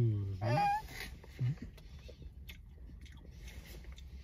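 A man's long low 'ooh' trails off and a short rising vocal sound follows. After that come quiet mouth sounds and faint clicks of cotton candy being eaten, over a faint steady low hum.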